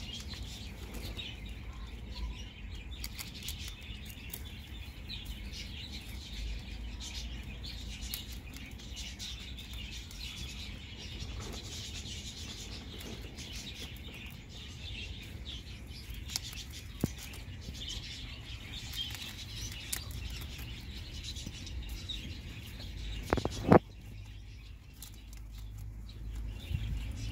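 Small birds chirping in the background, with light rustling and clicking from rabbits moving and chewing leaves in straw. A single sharp knock comes near the end.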